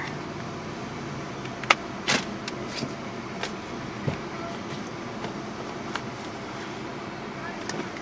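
Steady in-car background hum from the running car or its ventilation, with a few short clicks and taps scattered through the first half.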